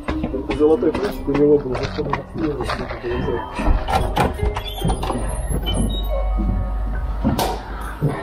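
Indistinct voices with music under them, mixed with footsteps and small knocks as someone climbs a staircase. One sharp knock comes near the end.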